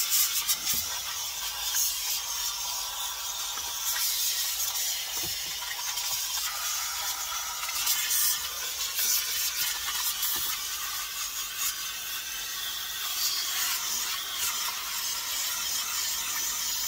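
Handheld steam cleaner jetting steam from its nozzle with a steady high hiss, played over a car's plastic centre console trim and carpet, with a cloth rubbing and scraping against the trim.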